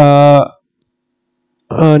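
A man speaking Hindi, his last word drawn out and ending about half a second in. Then about a second of dead silence broken by one faint, very short tick, before his speech resumes near the end.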